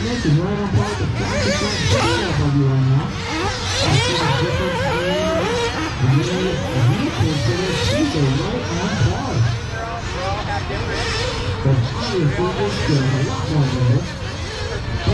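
Engines of large-scale radio-controlled race cars revving up and down as they race around a dirt track, their pitch rising and falling repeatedly, with voices talking over them.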